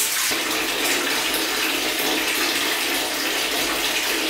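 Bath tap running steadily, water pouring into a filling bathtub.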